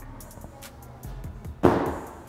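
Feet landing on artificial turf at the end of a standing broad jump: one loud thud with a short scuff, about one and a half seconds in, over background music.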